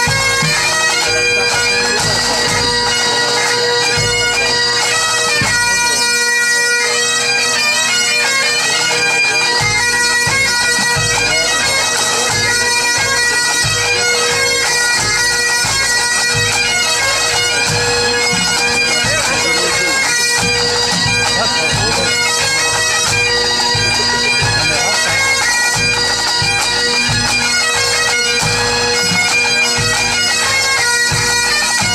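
Full pipe band playing: Highland bagpipes sound a steady drone under the chanter melody, with snare, tenor and bass drums keeping the beat. About three seconds in, the bass drum drops out, coming back in about ten seconds in.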